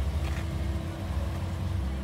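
Steady low mechanical hum with a faint steady tone above it.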